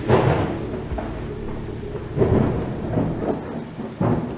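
Thunderstorm: steady rain hiss with deep rolls of thunder, the loudest at the start and another about two seconds in.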